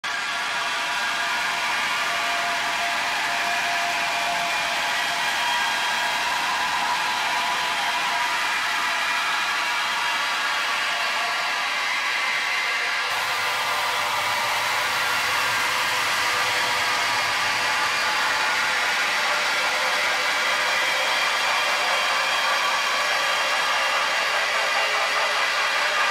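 Opening of a noise-heavy electronic track: a steady, dense wash of noise with faint high drones held inside it. A low rumbling layer comes in about halfway through.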